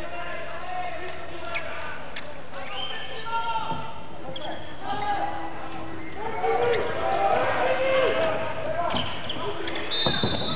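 A handball bouncing on the wooden court floor during play, with spectators and players shouting throughout. The voices swell about six and a half seconds in, and a referee's whistle sounds right at the end for an infringement.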